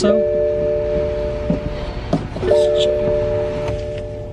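A horn sounding a steady chord of three tones in two long blasts: one of about two seconds, then after a short gap another of about a second and a half. It is heard inside a moving car over road rumble.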